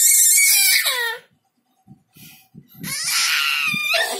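Baby screaming in high-pitched shrieks: one long scream in the first second or so, a short pause, then another from near the three-second mark.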